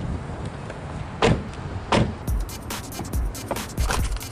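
A hand thumping on a 1999 Mitsubishi Mirage's plastic door trim panel, with four sharp knocks and a quick run of light clicks and rattles in the middle.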